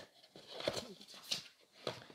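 Faint handling noise of an opened box: a paper card and the plastic tray being touched and shifted, with a few light taps and rustles.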